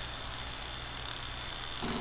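Steady low hum with an even hiss over it, unchanging throughout.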